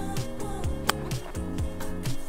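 Background music with a steady beat, and a single sharp crack of a golf club striking the ball about a second in.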